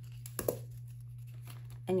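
Paper banknotes and planner pages being handled: a brief rustle with a couple of sharp taps about half a second in, over a steady low hum.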